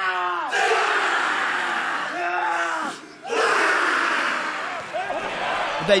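New Zealand under-20 rugby team performing the haka: a leader's drawn-out chanted call answered by the whole team shouting together. This happens twice, with a short break about three seconds in.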